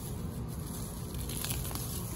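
Grass weeds being pulled up by hand: a faint rustle and tearing of leaves and roots coming out of the soil.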